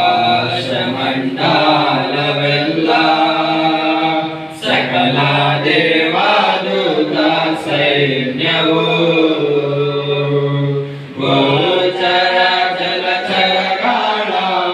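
A group of young men singing a Kannada Christian devotional song together, one of them into a microphone, in long held notes with short breaks between phrases.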